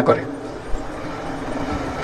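A man speaking into a podium microphone finishes a sentence just after the start. Then comes a pause filled with a steady hush of background noise.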